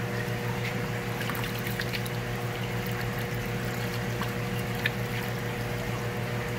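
Steady low hum of fish-room water pumps, with faint splashing and trickling as a hand moves in a plastic tub of shallow water.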